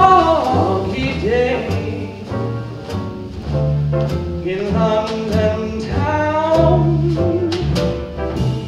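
Live jazz: a tenor voice singing a slow ballad line with vibrato, backed by piano chords, plucked upright bass and light drum kit.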